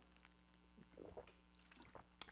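Near silence, with faint gulps of water being swallowed from a plastic bottle about a second in.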